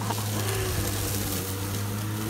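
Greenworks 19-inch battery electric lawn mower running steadily with a low motor hum, its blade cutting through tall, overgrown grass with an even hiss.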